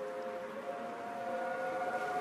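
Sustained synth chord held over a soft hiss, the ambient intro of a slow R&B-style instrumental beat; a higher note joins near the end.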